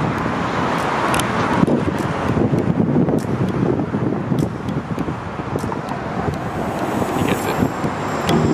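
Road traffic passing below: a steady wash of car tyre and engine noise, with wind buffeting the microphone.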